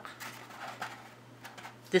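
Faint rustling and crinkling of accordion-pleated paper being fanned open and handled, with a few small paper clicks.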